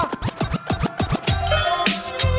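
DJ scratching in rapid back-and-forth strokes, then a hip-hop beat with heavy bass drops in just over a second in: the beat being started for the next freestyle round.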